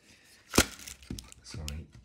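A hard plastic trail-camera housing set down on a table with one sharp knock about half a second in, followed by softer handling noises.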